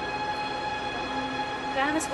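Steady, sustained droning tones, several pitches held together, typical of a synthesizer pad in a drama's background score. A brief voice sound comes near the end.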